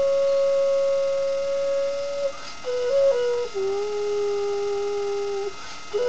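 Xun, the Chinese clay vessel flute, playing a slow solo melody: a long held note, a quick three-note turn a little before halfway, then a long lower note that stops shortly before the end.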